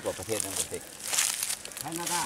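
Voices talking quietly, with a brief rustle or crinkle a little over a second in.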